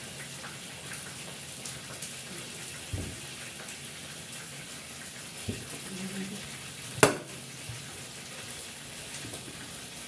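A cleaver chops into a bamboo shoot on a thick wooden chopping block. There is one sharp, loud strike about seven seconds in, with a few faint knocks before it, over a steady background hiss.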